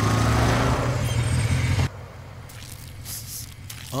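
Jeep engine running steadily, cutting off abruptly about halfway through, leaving quiet outdoor ambience; a short exclamation of "Ha" comes right at the end.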